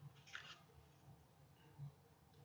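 Faint single snip of scissors through paper, about a third of a second in, and a soft knock near the end; otherwise near silence.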